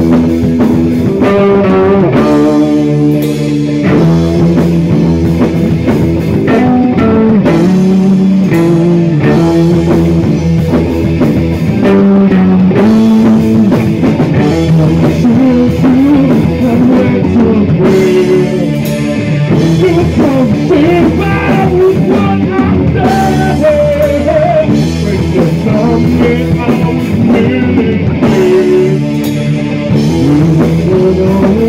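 Rock band playing live: electric guitars over bass and a drum kit, loud and continuous.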